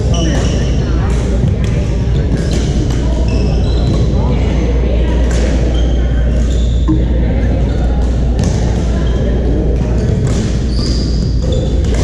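Busy badminton hall: rackets sharply striking shuttlecocks on several courts and sneakers squeaking on the wooden floor, with players' voices and a steady low hum, all echoing in the large room.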